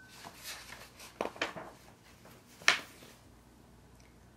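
A picture book's paper pages being handled and turned: a few soft rustles and one sharper, brief paper flick near the middle.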